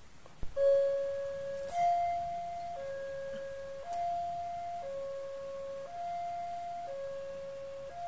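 Railway level-crossing warning alarm switching on with a click about half a second in, then a two-tone signal alternating steadily between a lower and a higher tone, each held about a second. It warns of an approaching train while the crossing barrier arms come down.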